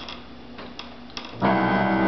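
Upright piano keys pressed by a Japanese macaque's feet: a few faint taps, then about one and a half seconds in a loud cluster of notes sounds at once and rings on.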